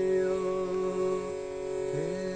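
Wordless freestyle chanting: a man's voice holding one long sung note with a steady tone sustained beneath it. The note fades and breaks near the end, then is taken up again.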